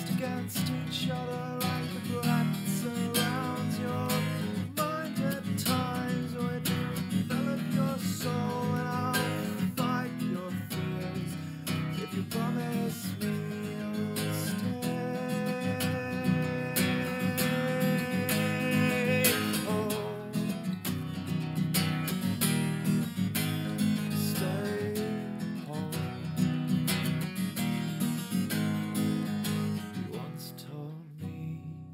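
Acoustic guitar strummed steadily, with a man singing over it.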